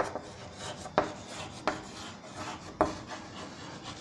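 Chalk writing on a blackboard: faint scratchy strokes with four sharp taps as the chalk strikes the board.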